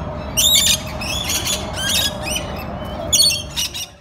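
Rainbow lorikeets squawking: a run of shrill, harsh calls, the loudest near the start and about three seconds in.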